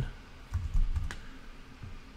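A few keystrokes on a computer keyboard as letters are typed in, dull taps with one sharper click.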